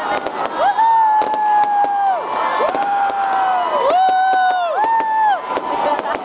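Aerial fireworks going off: a rapid run of sharp crackling pops, with several long whistling tones over them, each holding steady for about a second before dropping away.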